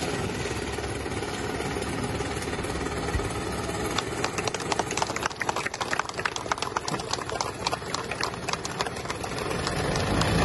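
Small engine of a homemade motorised pontoon boat running, with a rapid, irregular clatter setting in about four seconds in.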